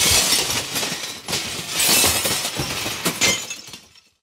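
A crash with breaking glass: a sudden loud smash, then clattering and tinkling pieces that go on for about three seconds and die away near the end.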